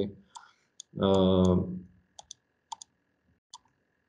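A man's drawn-out "uh" hesitation about a second in, then a handful of short, sharp computer mouse clicks spread over the next two seconds as the map is moved.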